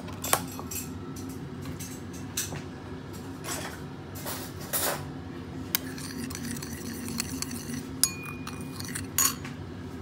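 Metal spoon stirring a thin liquid sauce in a ceramic bowl, clinking irregularly against the sides, with one clink near the eighth second that rings briefly. A steady low hum runs underneath.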